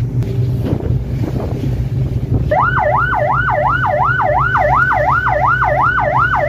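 A patrol boat's engine runs with wind on the microphone. About two and a half seconds in, a siren starts a fast yelp, rising and falling about three times a second, as a signal to a fishing boat to stop.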